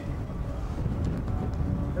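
Wind buffeting the camcorder microphone, a steady low rumble.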